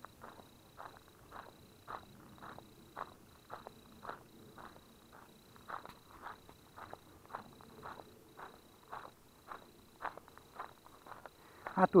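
Footsteps of a person walking on a gravel path: a short crunch with each step, about two a second, at an even walking pace.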